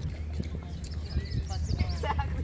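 Footsteps on a concrete path with the voices of people walking past. A bird gives a quick run of high chirps near the end.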